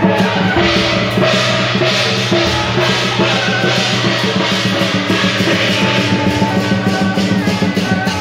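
Lion-dance percussion band playing: drums and cymbals beating a fast, steady rhythm, with sustained pitched tones beneath.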